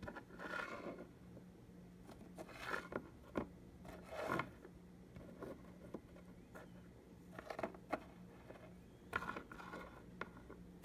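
Sandwich cookies being slid across and stacked on a wooden tabletop by hand: short, irregular scrapes and light clicks, about eight of them, over a faint steady hum.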